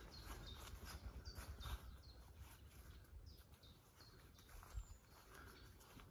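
Faint birdsong in a very quiet outdoor setting: short high chirps that fall slightly in pitch, repeated about every half second, over a low rumble.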